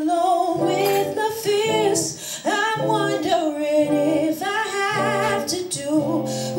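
A woman singing held notes with vibrato, accompanying herself on guitar.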